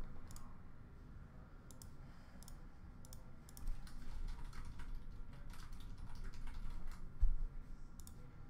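Irregular light clicks of computer keyboard typing and mouse clicking, as a randomizer is set up and run. A soft thump comes near the end.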